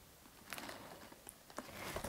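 Faint, brief rustles and soft clicks from a plastic bottle being handled close to the face, once about half a second in and again near the end.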